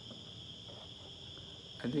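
A steady high-pitched insect drone of several even tones, crickets by their sound, over a faint hiss.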